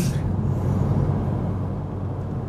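2008 Honda Civic Si's K20 four-cylinder engine, fitted with a catless header and cat-back exhaust, running while the car drives, heard from inside the cabin as a steady low drone mixed with road noise.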